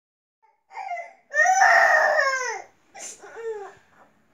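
A young child crying: a short cry, then a long, loud wail that falls in pitch, then two shorter, weaker sobs near the end.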